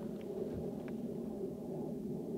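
Steady low rumbling noise, typical of wind buffeting the microphone in the open, with a couple of faint ticks.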